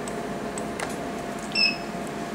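One short, high electronic beep from the Alma Harmony laser, about one and a half seconds in, sounding as the unit in ready mode fires its Pixel 2940 handpiece. It plays over the machine's steady hum.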